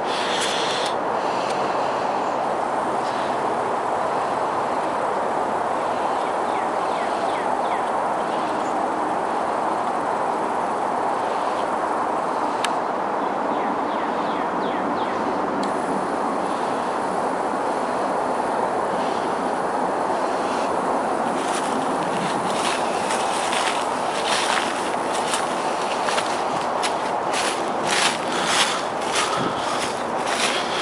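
Steady outdoor background noise with no words. In the last third a run of short clicks and rustles joins it.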